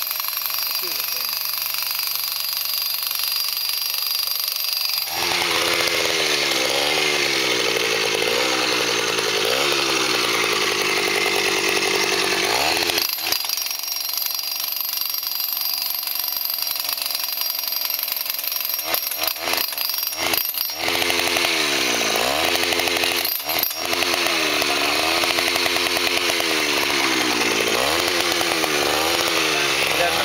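Petrol-powered jackhammer driving tent stakes into the ground, its engine speed rising and falling over and over as the stake is hammered in. It starts running hard about five seconds in, eases off for several seconds in the middle, then works hard again.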